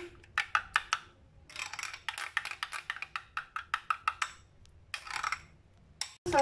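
A spoon stirring a thick paste in a small glass bowl, clinking against the glass in quick runs of taps of about five a second, with pauses between the runs.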